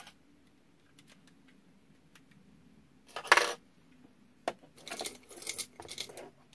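Costume jewelry clinking and jangling as a hand rummages in a jar full of jewelry: a few faint clicks, a loud brief rattle of metal pieces shifting about halfway through, then more clicking and jingling near the end.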